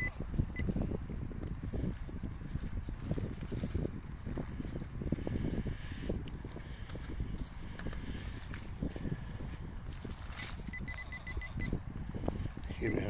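A handheld metal-detecting pinpointer is worked through loose soil, with irregular scraping and crackling and a low rumble. Near the end it sounds a fast run of short, high beeps, its signal that metal is close to the tip.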